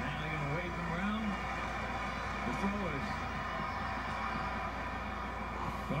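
Baseball TV broadcast sound heard from the television's speaker: faint voices over a steady background noise and a low hum.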